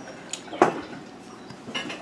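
A few short clinks and knocks of tableware, such as a ceramic coffee mug on a table, the loudest a little over half a second in.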